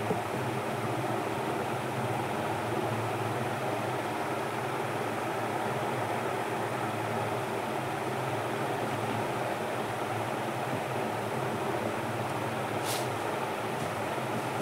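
Steady mechanical room hum with no change in pitch or level, with a brief faint high hiss near the end.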